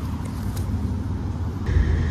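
Steady low rumble of a car idling, heard from inside the cabin, with faint rustling of jacket fabric being handled. A steady high tone comes in near the end.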